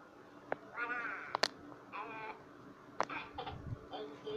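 A high-pitched voice gives two short calls with wavering pitch, about a second in and again about two seconds in. A few sharp clicks fall between them.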